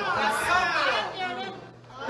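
Speech: voices in a large room, with a brief lull near the end.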